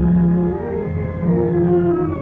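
Orchestral interlude of an old Hindi film song, with low held instrumental notes that step from pitch to pitch beneath higher sustained tones.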